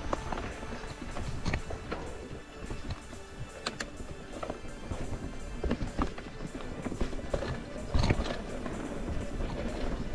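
Music over the rattle and knocks of a hardtail mountain bike riding over roots and rocks on dirt singletrack, with a heavier thump about eight seconds in.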